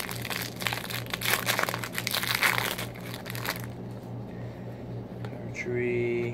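A Topps trading-card pack's wrapper being torn open and crinkled, a dense crackling for about the first three and a half seconds, then quieter handling of the cards.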